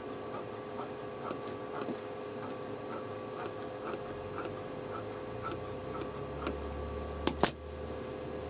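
Dressmaker's shears cutting through fabric on a table, a steady run of soft snips about two a second. Near the end come two sharp clacks, the loudest sounds, as the shears are set down on the table.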